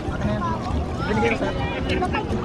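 Overlapping voices of several people talking and calling out among bathers in the water, over a steady low rumble of wind on the microphone.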